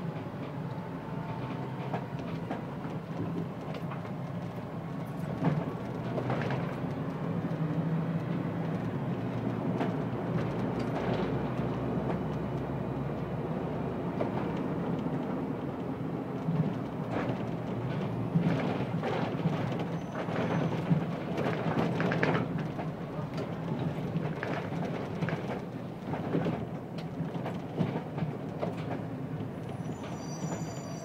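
Interior of a moving city bus: the engine's steady low drone with road noise, and frequent irregular rattles and knocks from the bodywork.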